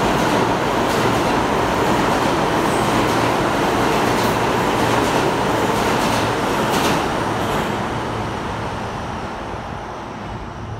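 New York City subway train running past on the far track, a loud steady rumble with a few clacks of wheels over rail joints, fading away over the last few seconds as it moves off.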